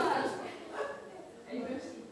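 Faint voices of children and adults in a room during a break in live string playing, with a short high child's call near the start.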